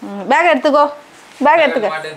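Speech only: two short, high-pitched spoken phrases about half a second apart.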